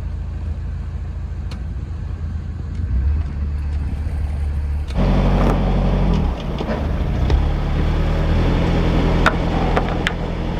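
Narrowboat's diesel engine running steadily, a low hum with a deep throb. About halfway through it becomes louder, with more rushing noise over it, and a sharp click sounds near the end.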